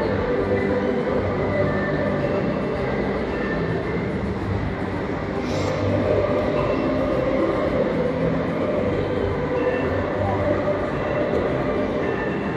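A large choir singing in a big indoor shopping-centre atrium, held notes shifting every second or so.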